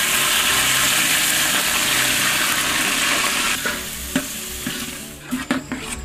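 Split moong dal hitting hot oil in an aluminium pot and sizzling hard, the sizzle easing off about three and a half seconds in. A few metal clinks near the end are a ladle stirring against the pot.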